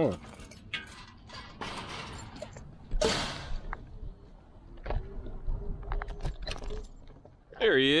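Metal mesh gate rattling and clicking as it is worked open, with a loud metallic clank about three seconds in. After that comes the steady low rumble of the electric scooter rolling along the pavement, with a faint steady whine.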